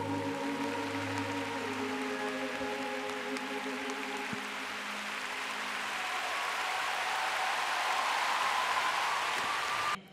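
Held chords of the skating program's music die away in the first couple of seconds as a large arena crowd's applause takes over and carries on, swelling a little near the end.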